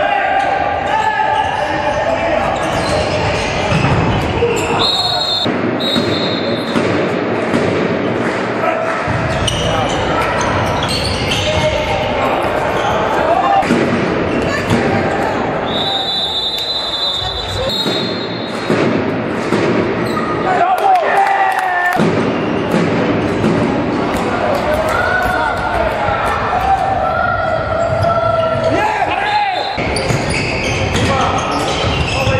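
Handball match in an echoing sports hall: a handball bouncing on the court floor and indistinct shouts of players, with two short high referee-whistle blasts, about five seconds in and again about sixteen seconds in.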